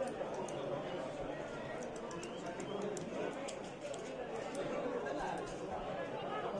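Football ground ambience: indistinct voices and chatter of players and a sparse crowd over a steady background hum, with scattered faint high clicks.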